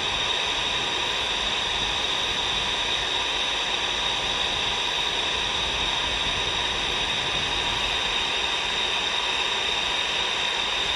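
Steady static hiss from the speaker of a C. Crane Skywave SSB 2 radio tuned to an air-band AM frequency: an open channel with no transmission between air traffic control calls.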